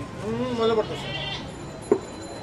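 A goat bleats once, a short call that rises and falls in pitch in the first second, over market voices. Near the end comes a single sharp chop on the wooden chopping block.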